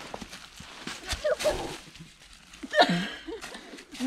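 Mountain bike tyres rolling and crackling over dry fallen leaves on a steep, slow climb, with the rider letting out two short vocal sounds of effort. The louder one, about three seconds in, falls and then rises in pitch as the climb stalls.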